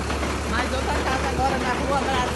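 Water tanker truck's diesel engine running with a steady low hum, with people talking over it.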